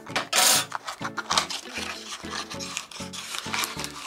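A small cardboard toy-car box being opened and a diecast model car in a plastic bag slid out of it: cardboard and plastic rubbing and scraping, loudest about half a second in. Background music plays under it.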